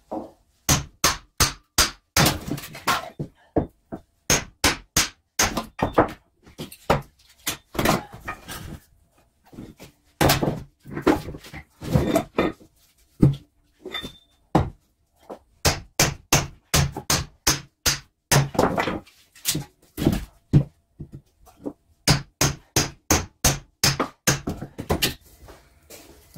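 Hatchet repeatedly chopping and splitting firewood: a long series of sharp wooden thunks in quick runs of about three to four strikes a second, with short pauses between runs.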